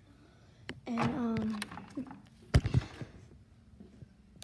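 A short wordless voiced sound about a second in, then one loud hard knock about two and a half seconds in, with a few light handling clicks around it.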